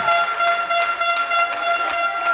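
A long, steady horn blast held on one pitch, with a few scattered claps over it.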